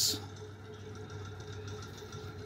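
A low, steady electric motor hum.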